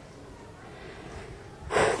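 Quiet room tone over a presenter's microphone, then a sharp in-breath near the end, just before she speaks again.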